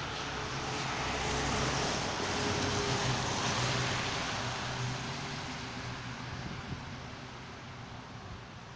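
Road traffic passing close on a wet road: tyre hiss and engine hum from an SUV and then a white minibus swell over the first few seconds and fade away after about five seconds.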